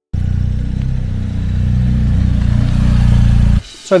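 BMW R1250 GS boxer-twin motorcycle engine running steadily close to the microphone. It grows slightly louder and then stops suddenly about three and a half seconds in.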